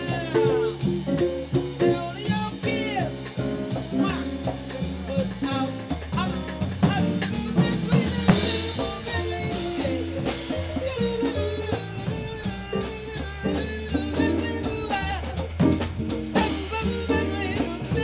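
Live jazz quartet playing: archtop electric guitar over a bass line, with a drum kit played with sticks.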